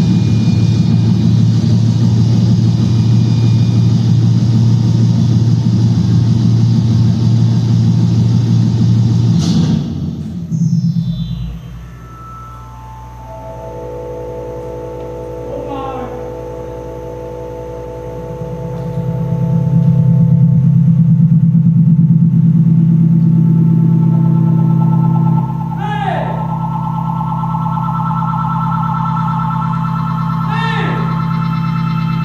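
Startup sequence of a show electrical machine: a loud, steady low electrical hum that cuts away about a third of the way in. Sustained tones and several falling pitch sweeps follow, and the hum swells back about two-thirds in.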